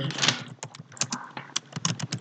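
Typing on a computer keyboard: a run of quick, uneven keystrokes, several a second.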